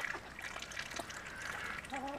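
Chickens and ducks foraging in wet mud: soft, scattered pecking and watery dabbling and trickling sounds.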